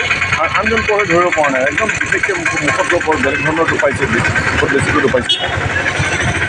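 A man talking continuously, with steady vehicle engine noise in the background.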